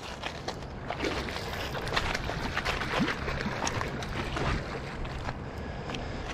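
River water running and lapping at a gravel shallows edge, with a scatter of small irregular splashes and clicks.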